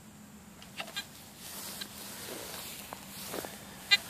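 Garrett AT Gold metal detector giving faint, erratic chatter with no target under the coil, and a short beep just before the end: the false signalling that the owner cannot stop by changing discrimination, frequency or sensitivity.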